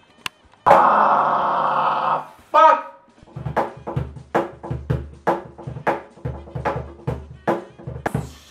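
A loud drawn-out cry for about a second and a half, then a cajon played by hand from about three seconds in: a steady groove of low bass strokes and bright slaps, about three strikes a second.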